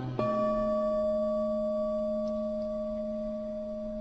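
A Buddhist bowl-shaped bell struck once a moment in, ringing a steady, clear tone that slowly fades. It is the stroke that closes each invocation of a Buddha's name in the chanted litany.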